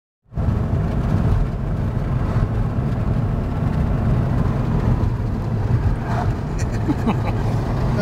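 Steady low road and engine rumble inside the cabin of a moving car, starting abruptly just after the beginning.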